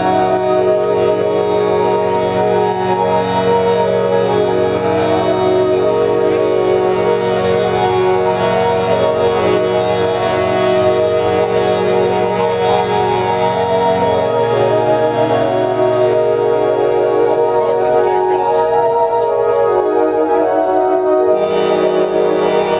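Live band music: an instrumental passage of sustained, effects-laden chords over a held bass note, the bass shifting to a new note about two-thirds of the way through.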